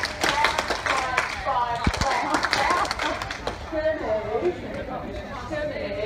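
Sharp hand slaps and claps from a group of people high-fiving partners and clapping, packed into the first two seconds or so, with voices talking throughout.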